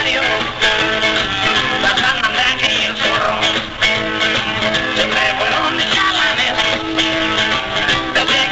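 Live rock band playing an instrumental passage, led by guitar, with no vocals.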